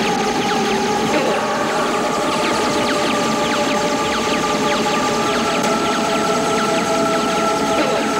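Rapid-fire sci-fi laser-gun sound effects, quick zaps falling in pitch several times a second, over sustained synth music notes.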